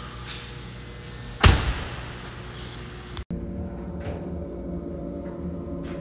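A single heavy thump with a short echoing tail about a second and a half in, then a steady low hum with several even tones.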